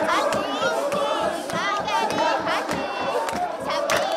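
A group of women singing and clapping in rhythm, with repeated high, trilling ululation cries over the song.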